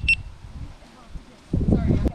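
GoPro Hero 9 Black action camera beeping as it powers on: the last of a quick run of short, high beeps at the very start. A louder burst of low sound comes near the end.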